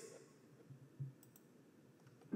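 Near silence with a few faint clicks of a computer mouse, two of them close together about a second in.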